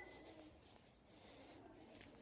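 Near silence, with the faint tail of a voice trailing off in the first half second.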